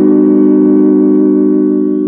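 Held closing chord of a TV station ident's music, several steady tones sounding together and slowly fading.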